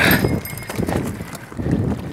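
Mountain bike riding fast over a rough, rocky dirt trail: the bike rattling, with irregular low knocks as the wheels hit bumps and rocks. The hardest knock comes right at the start.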